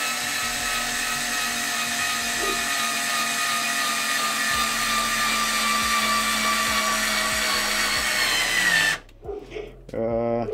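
Performance Power PSD36C-LI 3.6 V cordless screwdriver running under load as it drives a 3x45 mm wood screw into softwood: a steady whine whose pitch sinks slowly as the screw goes deeper, rising briefly before it stops about nine seconds in. The small screwdriver is slow to drive a screw this long.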